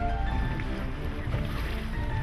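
Background music of held tones over a steady low rumble.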